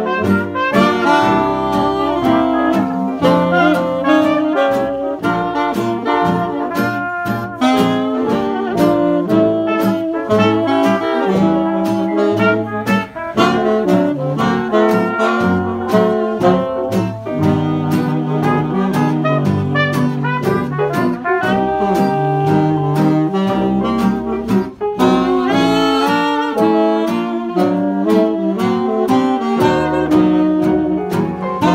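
Small hot-jazz band playing live in late-1920s style: tenor and alto saxophones, cornet and trombone playing together over banjo, bass and drums keeping a steady beat.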